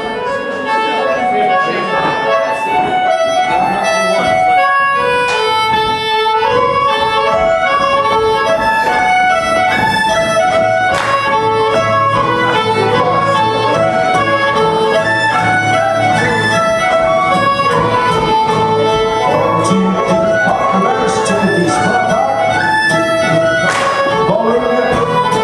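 A live Scottish dance band with fiddles playing a dance tune for the dancers, steady and loud.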